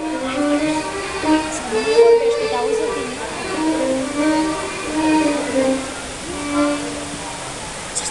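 Live acoustic music: a melody of held notes that slide in pitch, with people talking alongside.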